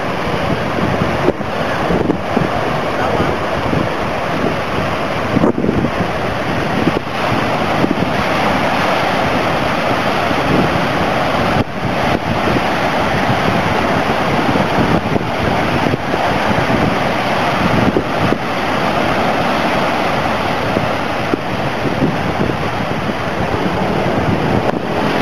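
Heavy storm surf from a distant hurricane breaking on a sandy beach and rocky shore, a loud continuous rush of waves, with strong wind buffeting the microphone.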